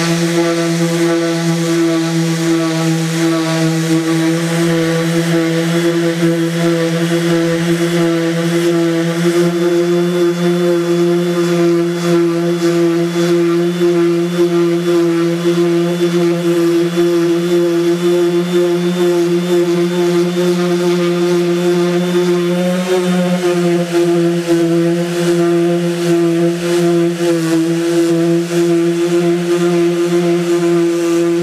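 Cordless random orbital sanders with 60-grit paper running steadily on lacquer-painted boards, stripping the lacquer. It is a constant droning motor hum that wavers briefly about three quarters of the way through.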